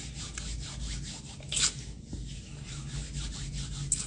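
Hands rubbing together close to the microphone: a run of short scraping strokes, with one louder swish about one and a half seconds in and a sharp click near the end.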